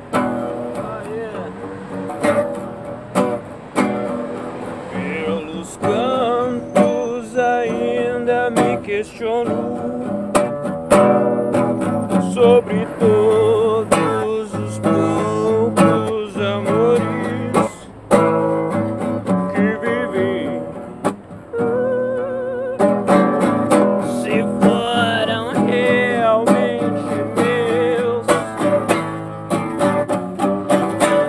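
Acoustic guitar being strummed and picked in a steady rhythm, with a voice singing a wavering melody over it for much of the time.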